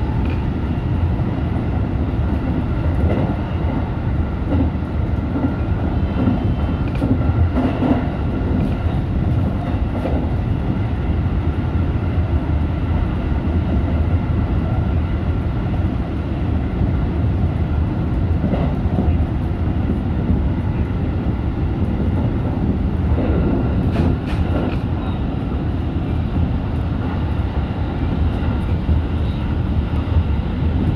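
JR Central 313 series electric train running along the line, heard from inside the front car: a steady low rumble of wheels on rail, with a few faint knocks from the track scattered through.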